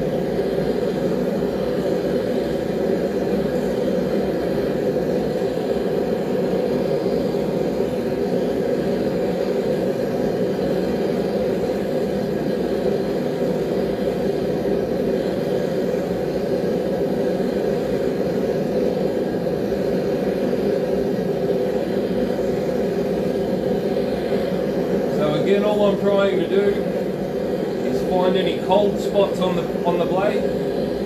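Forge running with a steady rushing noise while a 1084 high-carbon steel knife blade heats inside it toward its hardening temperature.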